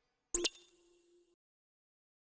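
Electronic logo sting: a single bright ding with a quick upward sweep in pitch, ringing briefly and dying away within a second.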